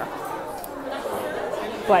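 Indistinct chatter of many people talking in a bar, with a woman's voice saying one short word near the end.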